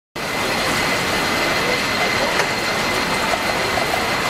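San Francisco cable car in motion: a steady, noisy running sound of the car on its rails with a thin, high, steady whine. There is one sharp click about two and a half seconds in.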